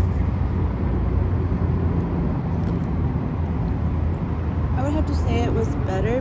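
Steady low rumble of road traffic. A woman's voice starts near the end.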